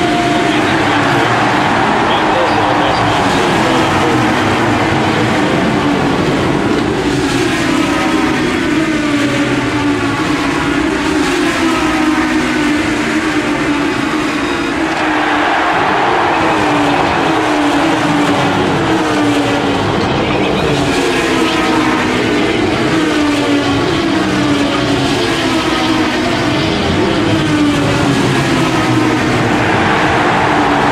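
Race car engine sound, revving up in repeated rising sweeps as it climbs through the gears, one run after another.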